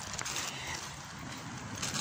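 Steady outdoor background noise heard while walking on a street, with faint footsteps.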